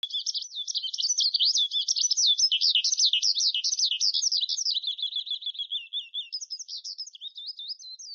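A songbird singing a fast, unbroken warbling song of quick rising and falling notes, easing into a softer, steadier trill about five seconds in before the warbling picks up again.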